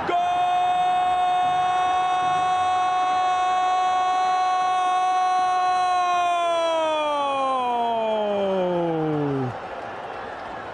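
A football commentator's drawn-out goal call: one long, high shout held on a steady pitch for about six seconds, then sliding down and breaking off about nine and a half seconds in, over faint crowd noise.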